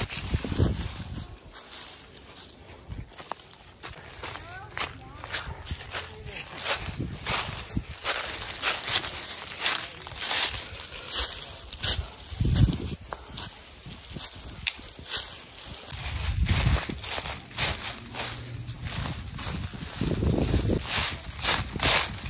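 Footsteps crunching through dry fallen leaves at a walking pace, about two steps a second, settling into a regular rhythm from about eight seconds in.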